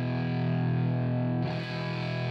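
Telecaster played through an Audio Kitchen Little Chopper hand-wired EL84 tube amp into a 4x12 cabinet, gain pushed up: thick, overdriven chords ringing on, with a new chord struck about a second and a half in.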